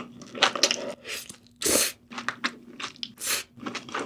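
Close-miked eating: a mouthful of spicy sea snail noodles being chewed with wet, crunchy clicks and crunches. Two longer hissing rushes come a little before halfway and near the end.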